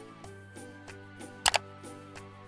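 Background music with a steady beat. About one and a half seconds in comes a loud camera shutter click, two snaps in quick succession.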